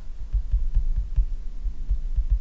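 Irregular low thuds, several a second, over a steady low electrical hum: stylus strokes on a tablet picked up by the microphone as dull bumps.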